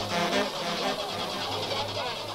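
Music from a vinyl record played on a turntable: a quieter passage with a steady bass line and fainter melodic parts, between loud brass stabs.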